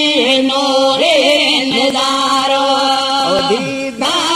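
A voice singing a naat, an Islamic devotional song, holding one long drawn-out note with small ornamental turns in the first second that fades just before the end.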